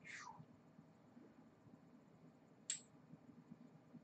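Near silence: room tone, with two brief faint noises, one at the very start sweeping downward and one a little before the end.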